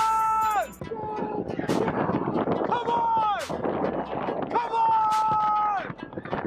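Air horn and gunshot sound effects: three long, steady air-horn blasts, each dropping away at its end, with sharp gunshot bangs between them.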